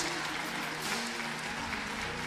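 Congregation applauding, a steady spread of clapping.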